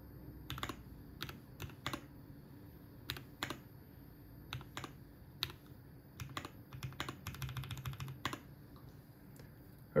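Typing on a computer keyboard: irregular single keystrokes, with a quick run of keys near the end.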